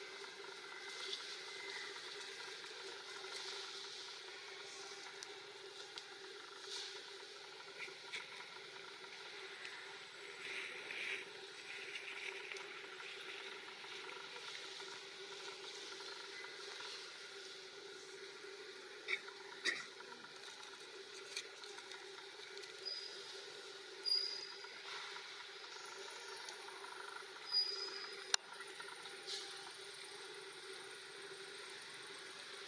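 Quiet outdoor ambience: a steady low hum under a faint hiss, with scattered soft rustles and clicks. A few short high chirps come in over the last several seconds.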